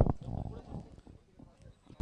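A sharp click as the sound cuts in, then faint outdoor background with a low murmur of distant voices that fades within the first second.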